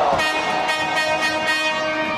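A horn sounding one steady, buzzy tone for nearly two seconds, cutting off near the end, over the noise of the hockey rink.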